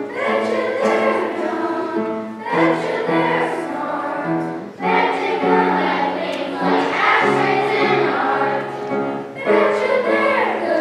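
Children's choir singing with piano accompaniment, in sustained phrases of a few seconds with short breaks between them.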